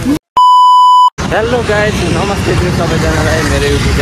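A loud, steady electronic bleep tone lasting under a second, cut in with a brief dead silence on either side. Voices talking over street traffic noise follow it.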